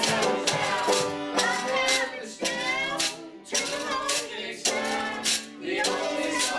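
A live folk band playing a song, with a steady strummed, shaker-like beat and voices singing over it. The beat drops out briefly a few times.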